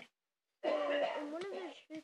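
A girl's voice making one loud, rough, wordless vocal sound of just over a second that starts about half a second in, its pitch rising and falling near the end.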